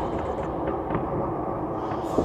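Steady low rumbling noise with a dull hiss, no beat or voice: the ambient sound bed of a Russian hip-hop track between spoken lines.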